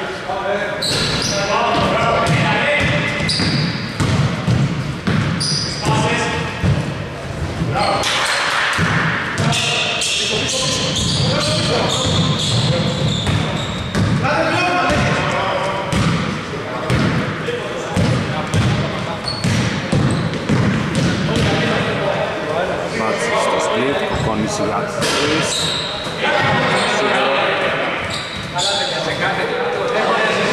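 Basketball game sounds in a large gym: a ball bouncing on a hardwood court with scattered knocks, under a steady clamour of players' voices that echoes in the hall.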